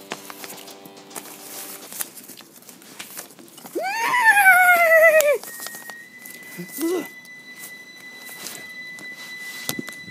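Paper cutouts rustling and tapping on carpet, under a held chord of steady tones at first. About four seconds in comes the loudest sound, a wavering cry that rises and then slowly falls for over a second. From the middle on a thin steady high tone holds.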